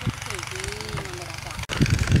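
A small engine idling steadily with an even low pulse. About one and a half seconds in, the sound cuts to a louder, irregular low rumble with thumps.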